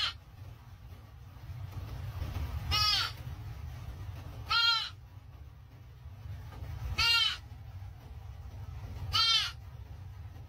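Deer fawn bleating: four short, high calls about two seconds apart, each rising then falling in pitch. The fawn is agitated. The calls sit over a steady low rumble inside a car.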